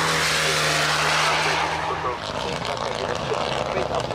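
Mitsubishi Lancer Evo X competition car's turbocharged four-cylinder engine at high revs as it drives by, held at a steady pitch for about two seconds. After that the engine note breaks up and changes.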